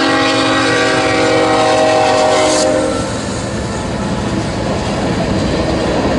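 BNSF freight train passing: the locomotive's multi-note air horn holds one long chord that cuts off about three seconds in. The empty tank cars then rumble and clatter past on the rails.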